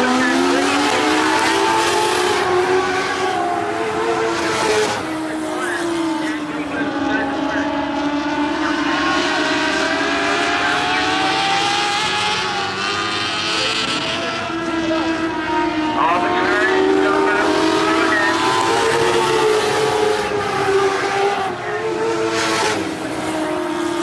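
Engines of several small dirt-track race cars running at racing speed, their pitch rising and falling as they go through the turns and down the straights.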